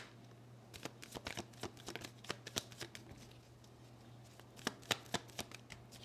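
A deck of oracle cards shuffled by hand: a quick run of soft card flicks over the first three seconds, then a short pause and a few more flicks near the end.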